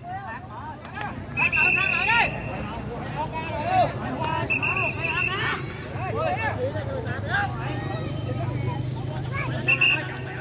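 Voices of a ngo longboat crew calling out as they make ready for a start, with a whistle blown in three short blasts and a steady low hum underneath.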